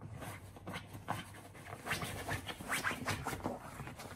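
A Shiba Inu digging and pawing at a blanket in its fabric dog bed: quick scratching and rustling of cloth, getting busier about two seconds in.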